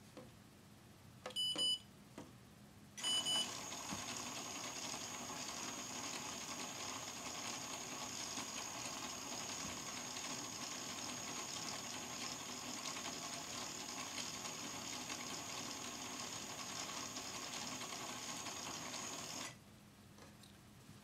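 A LEGO Mindstorms RCX brick beeps twice, about a second and a half in and again about three seconds in. A LEGO motor then drives a wall of plastic LEGO gears, running steadily with a thin high whine and the chatter of meshing teeth. It stops suddenly just before the end.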